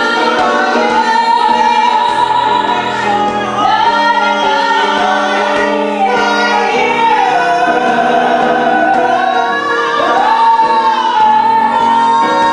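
Two women singing a cabaret song together in harmony into microphones, holding long notes with vibrato.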